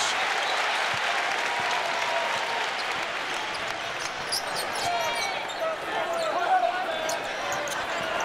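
Arena crowd noise during live basketball play, with a basketball being dribbled on the hardwood court and short sharp sounds of the play over the steady crowd.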